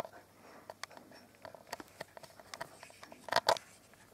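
Scattered small sharp clicks and ticks from a baby hedgehog shifting about in a soft blanket, with a louder pair of clicks about three and a half seconds in.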